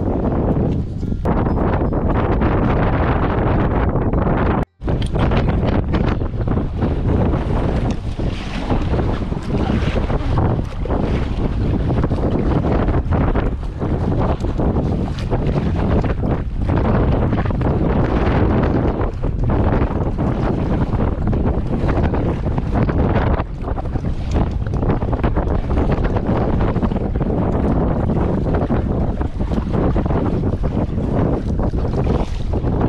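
Strong wind buffeting the microphone in gusts, over choppy pond water slapping and splashing against a paddled inflatable packraft. The sound cuts out for an instant about five seconds in.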